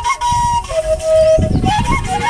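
Washint, the Ethiopian end-blown flute, playing a slow melody: a high note held for about half a second, a drop to a lower held note, then a climb in quick steps near the end. A low rumble runs underneath.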